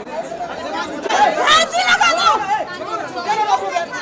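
Several voices talking over one another in a crowd, the chatter loudest from about a second in.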